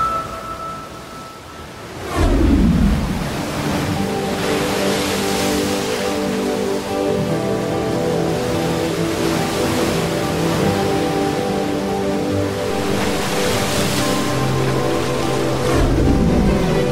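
Background score of sustained held chords, entering with a falling swoosh about two seconds in, with the rush of breaking sea waves under it.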